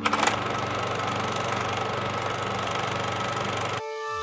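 Film projector running: a steady mechanical whir with a fast, fine clatter over a low hum. It starts with a click and cuts off suddenly just before the end.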